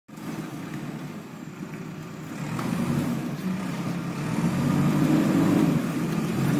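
Backhoe loader's diesel engine running, growing louder from about two and a half seconds in as the machine is worked.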